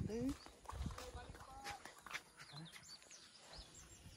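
Faint open-air ambience: indistinct voices and a short rising call at the start, then scattered high, brief bird chirps.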